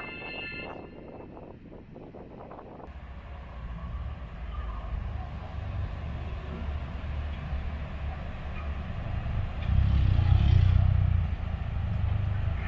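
Music fading out over the first few seconds, then an abrupt switch to a low, steady outdoor rumble with no clear pitch, which grows louder about ten seconds in.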